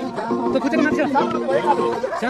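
Several people talking and calling out at once, over background music with held notes.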